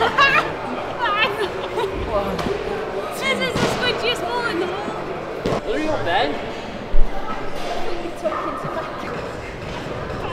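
Indistinct voices echoing in a large gym hall, with one sharp, loud thump about seven seconds in.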